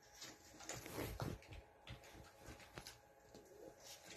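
Small Yorkshire terrier tussling with a house slipper: faint, irregular scuffs, rustles and light knocks of the slipper and paws against the dog bed and floor, busiest about a second in.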